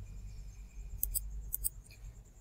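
Computer mouse clicks: two quick pairs about half a second apart, over a low steady hum.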